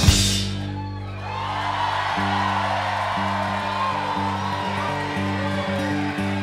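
Live string-band music: a percussive passage on an upright bass struck with sticks ends on a final hit that rings away. Steady held low notes then begin, changing pitch a few times, while the audience whoops and cheers.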